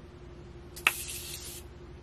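Morphe setting-mist pump bottle sprayed once at the face: a sharp click of the pump about a second in, then a short hiss of mist lasting under a second.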